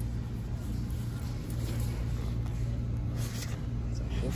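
A steady low hum runs throughout, with light rustling of a nylon handbag being handled, most noticeable a little past three seconds in.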